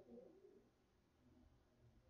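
Near silence: faint room tone, with a faint low sound fading out in the first half second.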